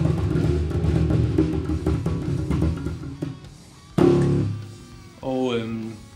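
Electric bass guitar playing a busy groove of deep plucked notes, dying away about three seconds in. A sharp loud accent follows about four seconds in, then a man's voice near the end.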